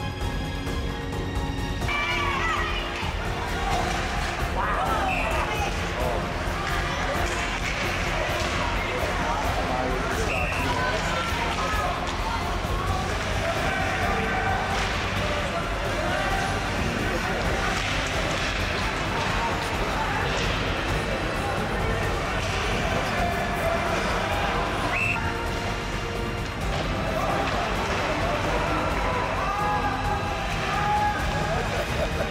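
Background music, joined from about two seconds in by indistinct shouting voices and the game noise of ice hockey play on the rink.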